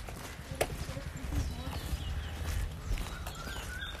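Footsteps while walking, with a low rumble of wind and handling on a phone's microphone and a sharp click about half a second in.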